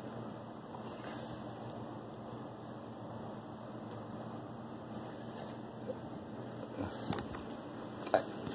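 Steady faint room hum, with a few soft clicks and scrapes near the end from the phone being handled and moved around the shelf.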